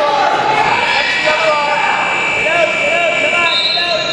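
Voices calling out in a large gym hall, with a steady high-pitched tone held from about half a second in.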